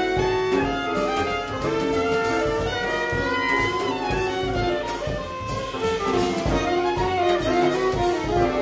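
A live jazz combo playing: two saxophones sound together over upright bass, piano, and a drum kit keeping time on the cymbals.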